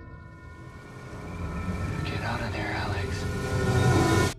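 Movie-trailer sound design: a deep, steady low rumble under sustained high tones, swelling louder through the second half, with wavering, warbling tones in the middle.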